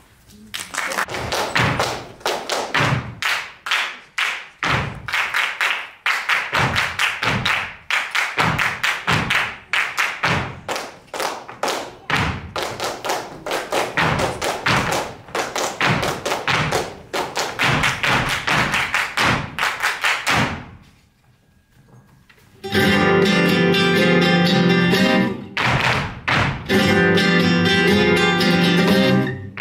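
Rhythmic flamenco claps and stamps, a quick run of sharp strikes with low thuds among them, lasting about twenty seconds and then stopping. After a short hush, flamenco guitar music starts near the end.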